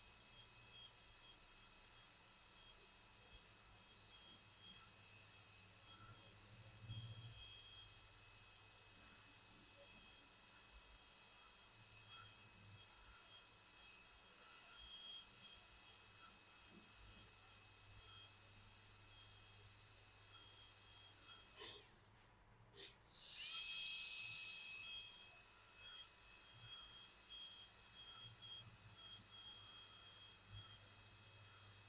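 High-speed air-turbine dental handpiece with a red-stripe finishing diamond bur, running with a faint, steady high whine while it finishes the margin of a front-tooth crown preparation. About three-quarters of the way through it cuts out for a moment, then a loud hiss of air for about two seconds.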